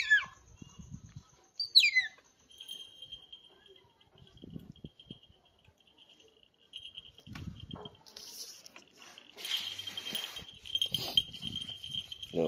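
A pet otter's high, squeaky chirp that falls in pitch, once right at the start and again about two seconds in. After it comes a faint, steady high-pitched trill, with soft scuffles of the animals moving on the floor.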